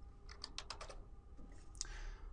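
Faint typing on a computer keyboard: a quick run of about half a dozen keystrokes in the first second, then one more near the end.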